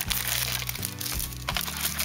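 Background music with steady low sustained chords, over the crinkling and crackling of a clear plastic sleeve as pin backing cards are pulled out of it.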